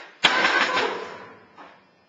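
A loud crash against metal school lockers, rattling and ringing as it dies away over about a second.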